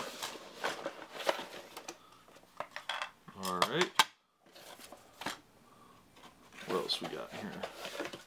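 Hands handling a cardboard game box and a plastic game unit on a wooden table: cardboard scraping and sliding with plastic clicks and light knocks. The sound cuts off abruptly about four seconds in, then the handling noises resume.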